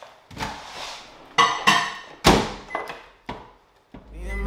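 A handful of sudden kitchen thunks and clatters in quick succession: a microwave door and a cutlery drawer being opened and shut.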